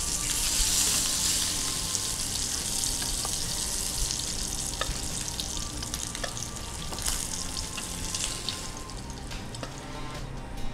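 Masala-coated kingfish slices shallow-frying in oil in a frying pan, a steady sizzle that thins out toward the end. A few light clicks of a spatula against the pan.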